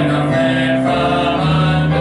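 Male vocal quintet singing in harmony, holding long notes that change a few times.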